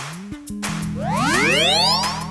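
Edited-in music and sound effect: a held low chord with a stack of pitches gliding steeply upward over the second half, a comic rising sweep.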